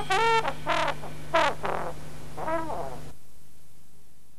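Brass instrument playing four short notes that slide down in pitch, the last one rising and then falling. The music stops about three seconds in, leaving a faint fading hiss.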